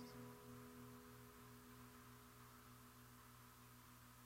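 Near silence: a pause in an acoustic guitar song. The last guitar chord fades away in the first second, leaving a faint steady low hum.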